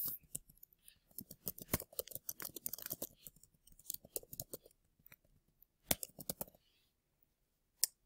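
Faint typing on a computer keyboard: short runs of keystrokes with brief pauses between them, stopping for about a second near the end before one last click.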